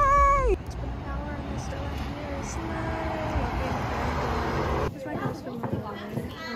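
A woman's high-pitched squeal lasting about half a second, followed by steady background street noise. Near the end the sound cuts to a room with scattered voices.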